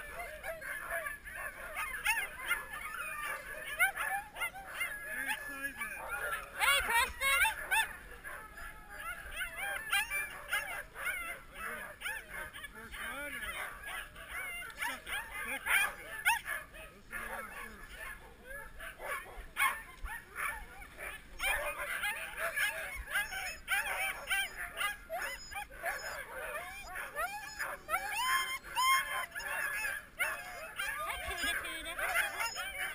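Several Siberian huskies calling over one another in high, wavering cries, with sharper, louder calls now and then. It is the excited clamour of sled dogs being harnessed for a run.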